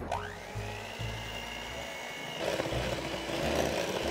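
Electric hand mixer starting up, its whine rising in pitch and then holding steady as the beaters cream butter, brown sugar and yogurt in a glass bowl. A little past halfway, the sound turns louder and rougher as the beaters work through the mixture.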